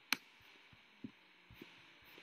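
One sharp computer click just after the start, then a few soft low thumps, over a faint steady room hum: a pointing device being clicked while a document is scrolled.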